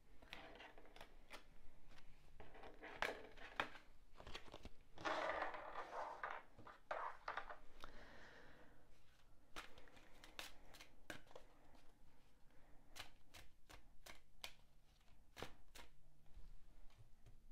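Tarot cards handled over a table: a faint rustling and sliding as the deck comes out of its box, then hand shuffling, with quick, sharp clicks of cards flicking and tapping together in the second half.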